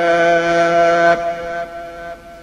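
A man's voice holding one long, steady chanted note at the close of a phrase of sung Arabic prayer, breaking off a little over a second in and fading away.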